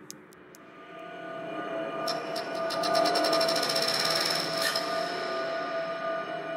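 Closing section of a dark progressive psytrance track. A held synth tone swells in about a second in, and a rapid run of high ticks joins it from about two seconds in, stopping near the end, with no steady beat.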